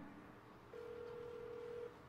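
Ringback tone of an outgoing call placed on a first-generation iPhone: one steady, faint tone lasting a little over a second, starting just before the middle, the sign that the called phone is ringing.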